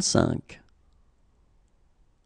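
A voice finishing the French number "quarante-cinq", ending with a short sharp consonant about half a second in, then faint room tone.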